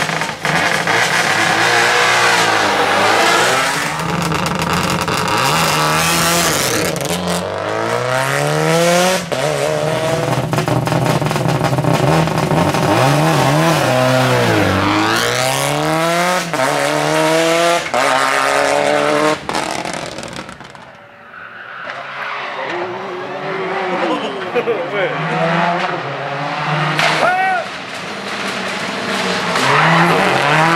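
Subaru Impreza WRX STI rally car's turbocharged boxer four-cylinder engine pulling hard through the gears, its revs climbing and dropping with each shift and lift, with a few sharp cracks between shifts. It falls to a short lull about two-thirds of the way in, then revs hard again.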